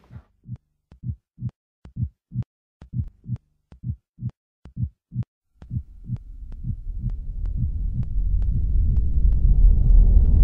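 Low, heartbeat-like thumps, about two a second, some in doubled beats. From about halfway a low rumble swells up under them and grows steadily louder toward the end.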